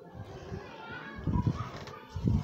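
Faint background voices, like children at play, with a few low thumps past the middle.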